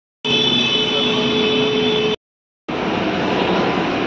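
Steady road-vehicle noise in two edited clips with brief dead-silent cuts between them. The first clip has a steady whine over the rushing noise; the second is an even rushing noise with a motorcycle close by.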